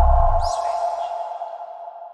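Switch TV's electronic logo sting: a deep hit that dies away within half a second, under a ringing tone that fades out over about two seconds. A brief high swish comes about half a second in.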